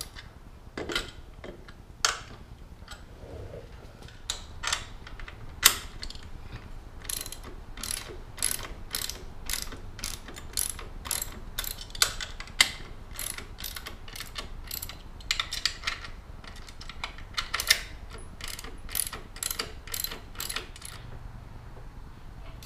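Hand ratchet clicking in short, cramped swings as bolts are run in, only about one click per swing. The clicks are irregular, sparse at first and then coming about two to three a second from about seven seconds in.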